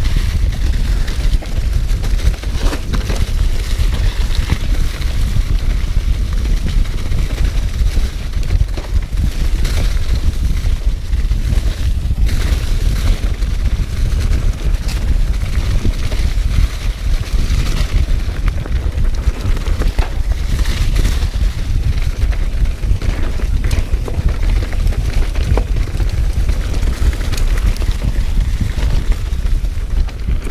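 Wind rumbling on the microphone of a handlebar camera on a mountain bike descending fast over a leaf-covered, rocky dirt trail, with frequent small knocks and rattles from the bike over the rough ground.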